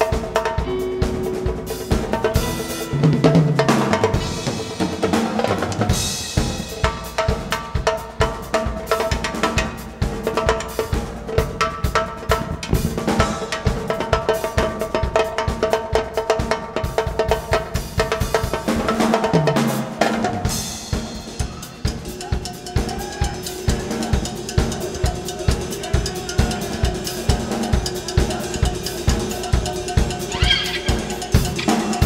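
A live rock band playing, fed from the soundboard: a drum kit keeps a fast, steady beat with snare and bass drum under sustained bass, keyboard and guitar notes.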